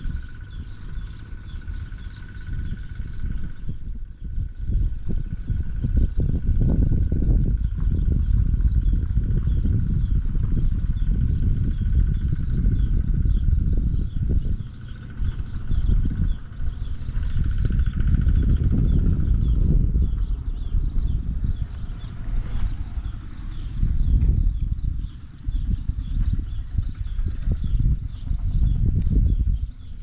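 Wind buffeting the microphone in uneven gusts, with faint chirping and a thin steady high tone underneath.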